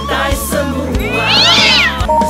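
A cat meowing once, a long meow that rises and then falls in pitch, over music with a steady beat.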